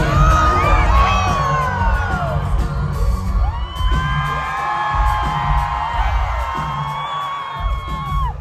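Live pop band playing loudly through a concert PA, with a heavy bass beat and a long sustained high note over the second half, and whoops from the crowd.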